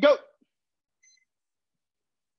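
A man's voice calling out "go" at the very start, then near silence, with one faint, brief high tone about a second in.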